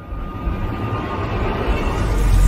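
A rumbling whoosh sound effect that swells steadily louder, rising into the intro music.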